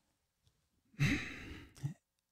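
A man sighs once, an exasperated breath out that starts about a second in and fades away.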